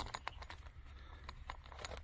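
Faint, scattered small metal clicks as a fuel line's flare nut is threaded by hand onto a high-pressure fuel pump, over a low steady hum.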